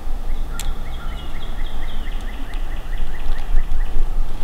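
A hen wild turkey yelping: a long, evenly spaced series of about four short notes a second, over a steady low rumble.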